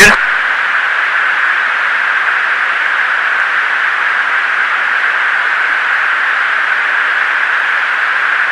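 Steady hiss of a Navy fighter jet's cockpit intercom recording, an even band of noise with the aircrew silent.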